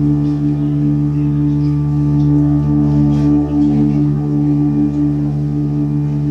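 Hurdy-gurdy sounding a steady, unbroken drone.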